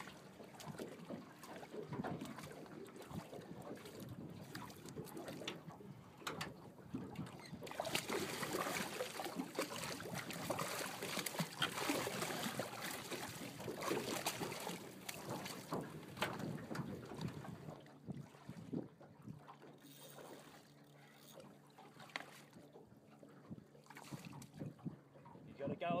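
Water splashing and slapping as a hooked hammerhead shark thrashes at the surface against the side of a boat, heaviest in the middle and easing off toward the end.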